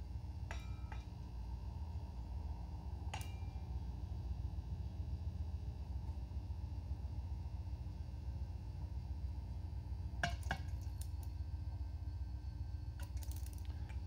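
Steady low hum of running electrical equipment, broken by a few light clicks and clinks: one near the start, one about three seconds in, another about ten seconds in, and a short cluster near the end.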